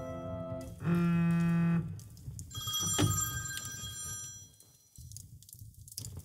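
Piano notes, then a mobile phone ringing with high tones. The ringing dies away a couple of seconds before the end as the call is answered.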